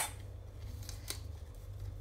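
Small kitchen knife cutting through a raw cabbage leaf on a wooden board: a sharp crisp snap at the start, then two fainter cuts about a second in.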